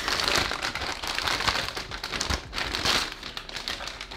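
Metallized anti-static bag crinkling and rustling as a motherboard is slid out of it by hand. The crackling is dense and irregular and eases off in the last second.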